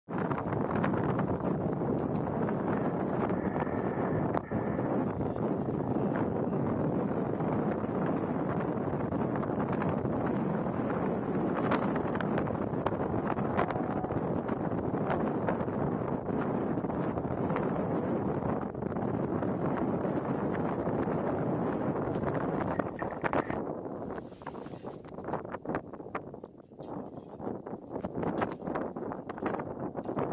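Wind buffeting the microphone on open sea ice, a steady rushing noise. About three quarters of the way through it drops to lighter wind with scattered crackles.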